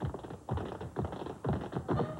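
Tap shoes striking a hard floor in a quick, uneven run of taps, with the band music faint beneath during a break in the accompaniment.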